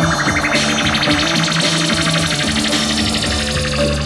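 Live rock band playing an instrumental passage led by electric guitar, with a sweep rising in pitch over the first second or so.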